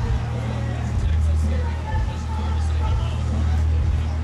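Outdoor background noise: a steady low rumble that dips briefly a few times, with faint voices chattering underneath.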